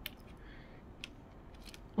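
Faint handling noise of small plastic toy parts on a tabletop: a few light clicks spread out over a couple of seconds, with soft rustling between them.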